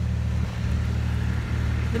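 Steady low machinery hum from the asbestos-removal works on the building, running evenly without a break.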